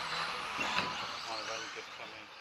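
Indistinct voices over steady background hall noise, the whole sound fading out.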